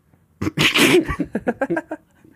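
A sudden, breathy burst of laughter about half a second in, breaking into a quick run of short laughs.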